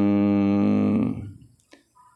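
A man's voice holding one long, level hum-like filler sound at a steady low pitch. It fades out about a second in, followed by a faint tick near the end.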